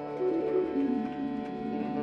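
Live jam band playing an instrumental passage: sustained chords under a lead line that steps down in pitch and then wanders.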